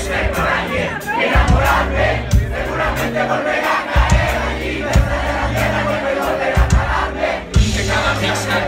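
Live band playing, with held bass notes and kick-drum thumps, over the noise of a crowd shouting and cheering close to the microphone.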